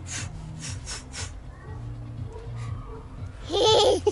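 A young child's high-pitched laughing squeal near the end, after a few soft rustling noises in the first second.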